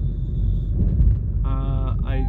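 Low, steady road and engine rumble heard inside a moving car's cabin.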